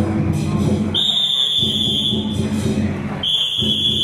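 Percussion music for a dragon dance, with a dense steady beat throughout. A shrill, steady high tone sounds twice over it: once from about a second in for nearly two seconds, and again from shortly after the three-second mark.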